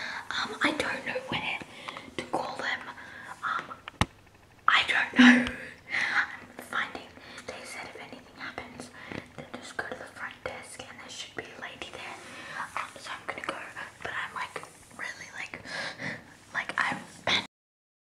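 Hushed whispering voices in a quiet room, with one sharp click about four seconds in; the sound cuts off abruptly near the end.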